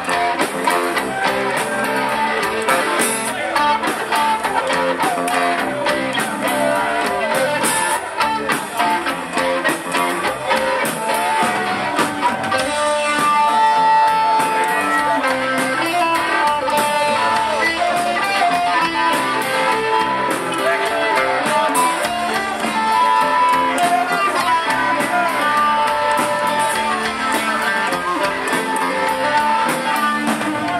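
Live rock trio playing an instrumental passage: electric guitar over bass guitar and drums, with the guitar's held high lead notes coming forward in the second half.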